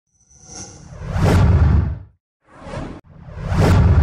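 Whoosh sound effects for an animated logo intro: a long swelling whoosh with a deep rumble underneath that dies away about two seconds in, a short swish, then another swelling whoosh building near the end.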